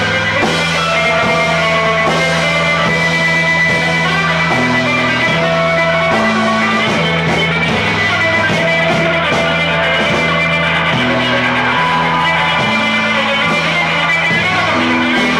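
Live rock band playing, with a semi-hollow electric guitar being strummed over low held notes that change about once a second.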